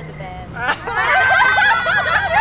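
Several people shrieking and laughing loudly in high, overlapping voices, starting about half a second in and growing louder, over a steady low hum of street traffic.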